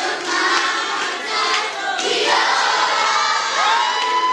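A large group of children singing together. Near the end one voice slides up and holds a high note.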